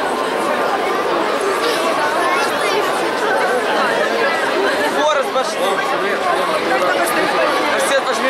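Crowd chatter: many people talking at once, a steady dense babble of overlapping voices.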